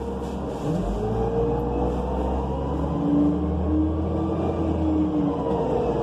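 Inside a 2005 New Flyer C40LF bus under way: its Cummins Westport C Gas Plus natural-gas engine and Allison B400R transmission run with a low rumble, the engine note rising about a second in as the bus speeds up, then holding with a steady whine before easing off near the end.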